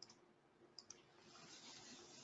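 Near silence with a couple of faint computer-mouse clicks a little under a second in.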